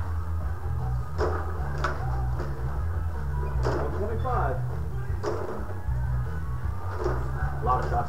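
Rod hockey table in play: a few sharp clacks of the puck and the rod-driven metal players striking, spaced a second or more apart, over a steady low background drone.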